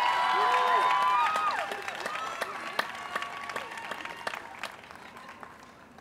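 Crowd applauding and cheering, with held whoops in the first two seconds; the clapping then thins out and fades to a few scattered claps by the end.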